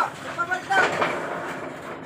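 Short voices calling out, over rough scraping and knocking noise from work on the roof's wooden boards.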